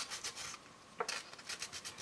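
Folded 220-grit sandpaper rubbing the rough edges of a hardened Quick Cure Clay molded piece: faint, short scratchy strokes with a brief lull near the middle and a small tick about a second in.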